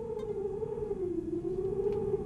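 A single held musical tone opening a live song. It is nearly pure and wavers slowly up and down in pitch, over a low hum of room noise.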